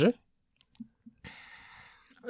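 A pause in conversation: a few faint mouth clicks, then a soft in-breath lasting most of a second and a sharp lip smack just before the next speaker answers.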